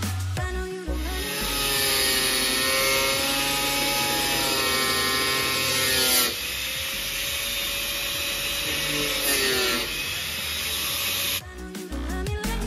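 Small electric angle grinder cutting into the plastic of a car bumper, its motor whine sagging and climbing as the disc bites and frees. Electronic music with a beat plays briefly at the start and again near the end.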